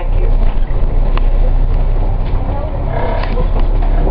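Steady low rumble of a double-decker city bus's engine and road noise, heard from inside the moving bus.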